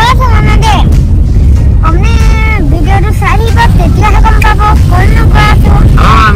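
Boys' voices talking and calling out, one drawn-out high cry about two seconds in, over a loud steady low rumble of road and wind noise inside a moving car.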